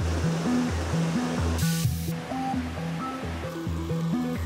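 Background music with a repeating bass line and chords. Over it, for about the first two seconds, the rushing of a mountain stream, which ends in a brief brighter surge and then fades.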